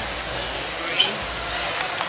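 A short spoken 'sí' over a steady hiss of background noise, with a brief sharp click about a second in.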